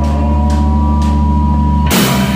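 Live rock band: a sustained low chord from bass and guitar rings on while drum hits come about twice a second, then near the end the full band crashes in loudly with distorted guitar and cymbals.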